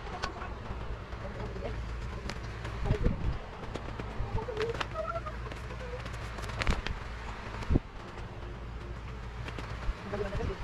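Handling noise from laying a vinyl sticker onto a Sintra (PVC foam) board: a cloth rubbing the vinyl flat and the backing paper rustling, with a few sharp crinkles. A steady low hum runs underneath.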